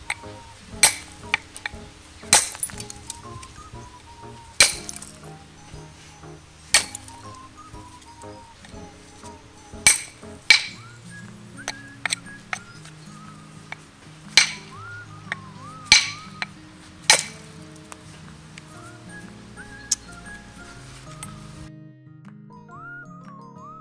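A deer-antler billet striking a stone core in soft-hammer percussion, knocking off flakes: sharp clinks at irregular intervals of one to three seconds, about a dozen in all.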